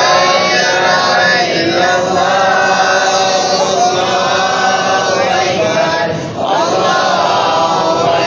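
Islamic devotional chanting by voice, sung in long, drawn-out melodic phrases that rise and fall in pitch, with a short break about six seconds in before the next phrase begins.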